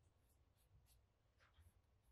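Near silence, with faint rubbing and a few light ticks from hands handling a small leather case.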